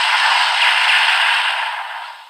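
Electronic sound effect from a Kamen Rider Revice DX toy: a steady, noisy rush with nothing in the low end, fading away near the end.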